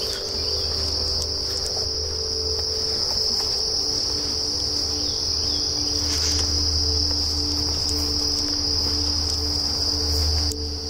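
Steady, continuous high-pitched chorus of insects in summer vegetation, with a low rumble underneath.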